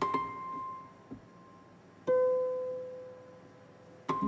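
Concert harps plucked in a sparse opening: a bright note at the start and a lower note about two seconds in, each left ringing and slowly fading.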